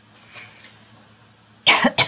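Quiet room with faint soft rustles, then a sudden loud, breathy burst from a woman's voice near the end, a cough-like outburst running straight into laughter.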